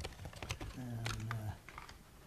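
Several sharp clicks and light crinkles from medals in plastic packets being handled on a table, then a short hummed "mm" from a voice partway through.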